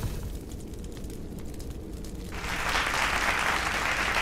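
Low rumble of a rocket explosion dying away, then, about two seconds in, applause from an audience starts up.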